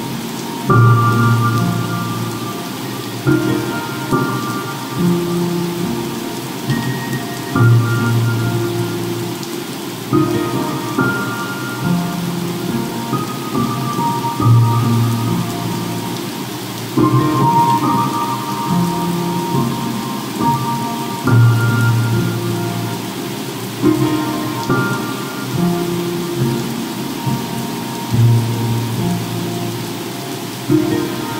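Slow piano music, a low bass note struck every few seconds under gentle higher melody notes, laid over a steady rushing bed of ocean waves and crackling fireplace.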